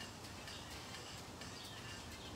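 Faint outdoor ambience: a low steady hum with faint, scattered high-pitched bird chirps.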